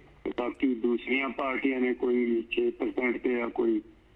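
Speech only: a person talking steadily, the voice thin and cut off above about 4 kHz, like a caller heard over a telephone line.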